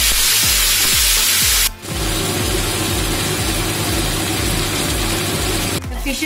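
Seer fish steaks shallow-frying in hot oil, a steady sizzle that breaks off briefly a little under two seconds in and then carries on. Background music with a steady bass beat runs underneath.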